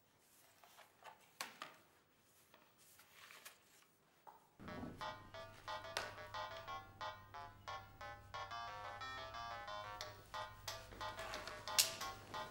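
Soft strokes of a broom sweeping a tiled floor, then about four and a half seconds in, music starts with quick, bright melodic notes over a low hum.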